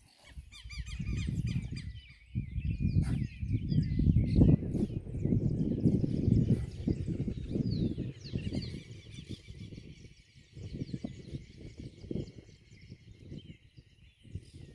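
Birds chirping and calling over a low, uneven rumble of wind buffeting the microphone, the rumble the louder of the two and coming in gusts.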